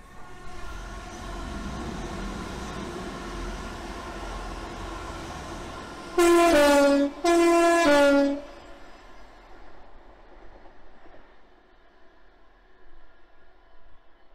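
TransPennine Express Class 185 diesel multiple unit running in with a steady engine note, then sounding its two-tone horn twice, each loud blast about a second long and stepping from the high tone down to the low tone.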